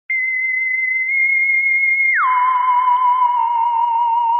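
Outro sting: a single pure electronic tone that starts abruptly, holds high for about two seconds, then glides down about an octave and carries on with a slight wavering wobble.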